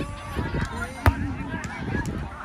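A volleyball serve: one sharp smack of a hand hitting the ball about a second in, over faint distant voices.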